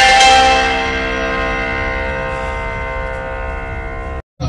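A chord played on a musical instrument, its notes held together and slowly fading, ringing like a bell.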